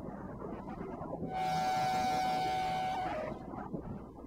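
Electronic synthesizer sounds: a low rumbling noise bed, with a held, hissy synth tone coming in a little over a second in. The tone dips in pitch and cuts off just after three seconds.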